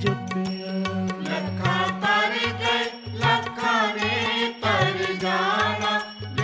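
Sikh devotional kirtan music: a held drone, a repeating drum beat with sharp percussive strokes, and a melody line that bends and wavers in pitch.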